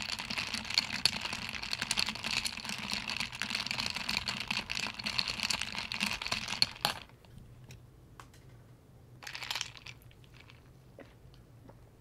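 Metal straw stirring ice cubes in a glass mason jar of iced tea: quick, busy clinking and rattling that stops about seven seconds in. A brief noise follows a couple of seconds later.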